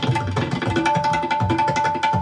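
Several tabla played together at a fast tempo: a dense stream of crisp strokes on the small treble drums over deep bass-drum strokes that bend in pitch, with a steady high accompanying note held underneath.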